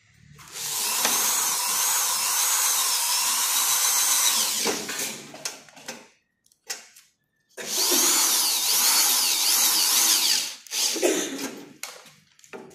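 Electric drill-driver running in two long bursts, of about four and three seconds, as it drives screws into gypsum board, its motor whine wavering in pitch. There are a few short clicks between the bursts.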